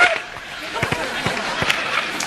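A few knocks and thuds from sideline gear, a water cooler among it, being thrown and knocked over. There is a loud hit at the very start and a run of short knocks between about one and one and a half seconds in.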